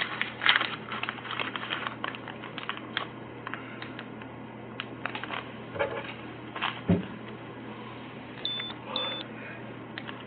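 Scattered clicks and rustles of things being handled close to the microphone, over a steady low hum.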